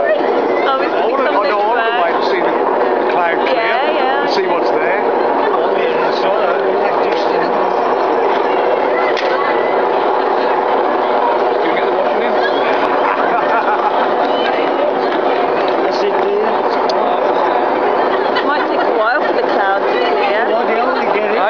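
A crowd of onlookers talking over one another, many voices at once and no single speaker standing out, with a steady faint drone underneath.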